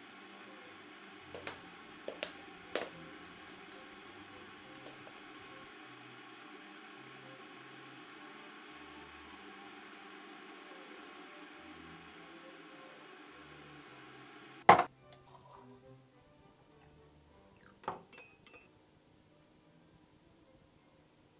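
Kitchen work at a counter: light clinks of crockery and cutlery, with a steady hum behind. About three-quarters of the way through comes one sharp, loud click, and the hum stops with it. A few more soft clinks of a teaspoon and cups follow near the end.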